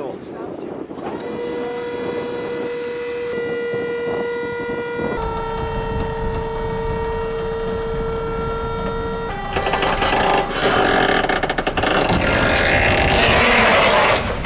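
Electric hydraulic pump of a tipping trailer whining steadily as it raises the loaded bed, its pitch stepping down slightly twice as it takes the weight. From about nine and a half seconds the load of cut branches and brush slides off the tipped bed with a loud, crackling rush.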